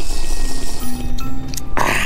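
Background music with held notes over a steady low bass, and a brief noisy burst near the end.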